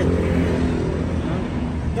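Steady low rumble of a running vehicle or road traffic, with an even background hiss.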